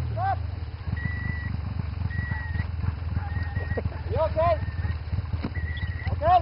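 Snowmobile engine idling with a steady, rough low pulse, its revs having just dropped. Spectators let out short whooping calls near the start and again about four seconds in.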